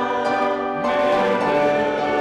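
Congregation singing a hymn with instrumental accompaniment, holding sustained notes and moving to a new chord a little under halfway through.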